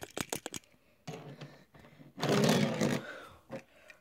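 Handling noise on a phone's microphone as the camera is moved: a quick run of clicks at the start, then rustling with a louder rubbing burst in the middle.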